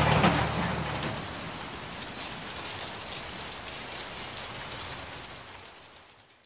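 Intro sound effect: a noisy whoosh with a low rumble at the start, then a steady rain-like hiss that fades away over the next few seconds.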